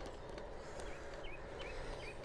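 Steady tyre and wind noise from a bicycle being ridden on wet tarmac, with a bird giving short, repeated chirps from just under a second in.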